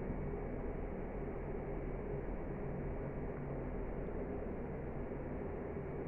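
A steady, even background hum and hiss with no distinct sounds standing out.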